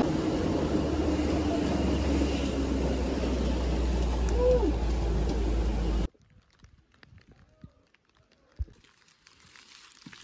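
Open-sided tourist shuttle running along a mountain road: a steady low engine drone with road and wind noise. It cuts off abruptly about six seconds in, giving way to near silence with a few faint clicks and a single soft knock.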